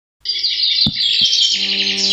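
Birds chirping busily, starting suddenly out of silence, with two faint clicks. About one and a half seconds in, soft sustained music notes join the birdsong.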